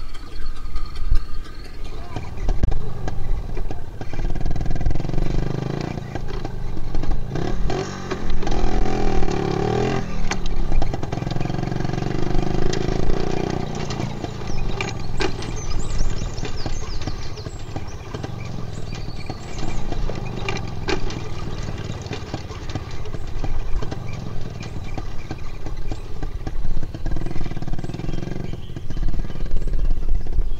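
Small motor vehicle engine running as it drives across open ground, its pitch rising and falling with the throttle.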